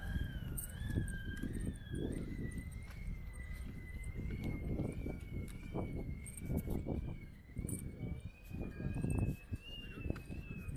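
Moonwalkers X motorized shoes in use: a thin high whine from their brushless electric motors that drifts slowly up and down in pitch as the walking speed changes, over a low rumble of wheels on asphalt and irregular soft footfalls.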